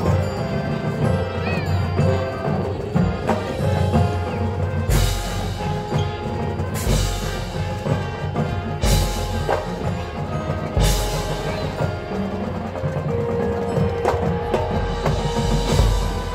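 High school marching band playing its halftime field show: winds and battery, with mallet percussion from the front ensemble. About five seconds in come four big accented hits, each with a crash and a low drum, about two seconds apart.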